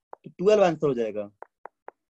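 A man's voice saying a short phrase in Hindi, then four or five short, soft taps about a quarter second apart: a stylus tapping on a tablet's glass screen while writing.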